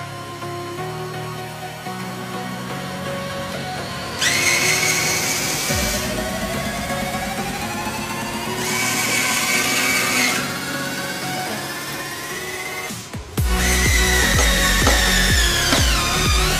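A small cordless electric screwdriver's motor whirring in three short runs as it drives screws into wood. The last run is longer, and its pitch falls slightly. Electronic background music with a long rising sweep plays throughout.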